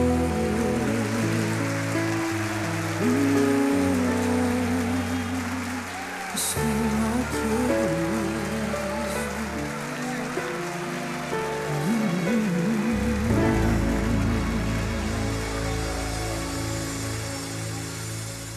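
A woman singing a slow gospel song into a handheld microphone over sustained backing chords, her held notes wavering with vibrato. The music fades down toward the end.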